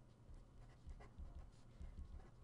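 Faint scratching of a felt-tip pen writing on paper, a few short strokes, over a low room hum.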